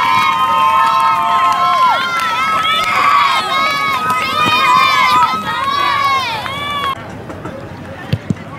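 A group of football players yelling and whooping together as they run in a pack, many voices overlapping. The shouting cuts off abruptly about seven seconds in.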